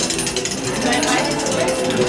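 Hand-cranked pressed-penny machine being turned, its gears and rollers making a steady run of rapid mechanical clicking as a coin is pressed.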